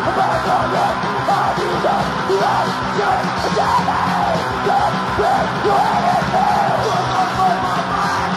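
Stenchcore crust punk played from a cassette: loud, distorted guitar, bass and drums with harsh shouted vocals over them, a dense and unbroken wall of sound.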